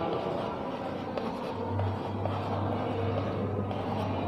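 Chalk scratching and tapping on a blackboard as small circles are drawn one after another, with a low hum underneath.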